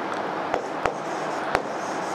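A steady background hiss with three sharp clicks, about half a second, one second and a second and a half in.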